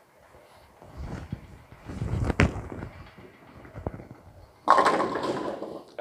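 A Legends Pure Diamond bowling ball is thrown and rolls down a wooden lane with a low rumble. About three-quarters of the way in it hits the pins in a loud crash and clatter.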